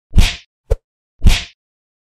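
Two heavy punch-like impact sound effects about a second apart, each fading quickly, with a short sharp click between them: the hits of an animated logo intro.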